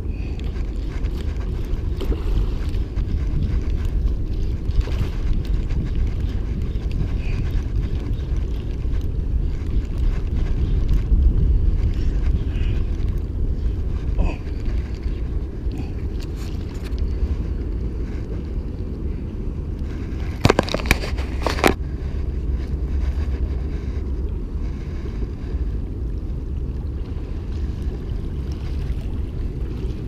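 Wind rumbling steadily on an action camera's microphone outdoors. About two-thirds of the way through come three sharp clicks in quick succession.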